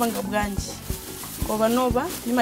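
A woman speaking in short phrases over quiet background music.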